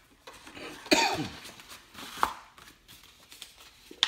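Cardboard and plastic packaging being handled: a loud scraping rustle with a squeak falling in pitch about a second in, then a short sharp knock a little after two seconds, with quieter rustling between.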